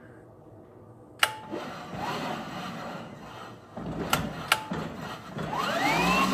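The high-speed electric drive motor of a Club Car DS golf cart runs in fits and starts, with sharp clicks between the runs. Near the end it spins up with a whine rising in pitch. It runs intermittently because the battery negative cable is only loosely attached.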